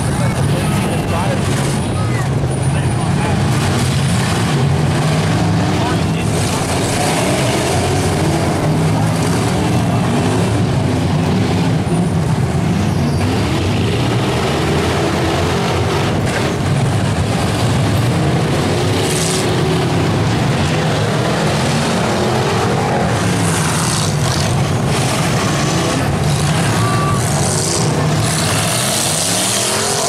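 Several demolition derby cars' engines running and revving hard, pitch rising and falling, with a few crunches of metal as the cars collide in the second half.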